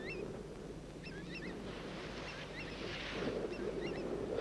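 Faint bird calls outdoors: short, high, hooked notes repeated a dozen or so times over a quiet low background hum of wind and open air.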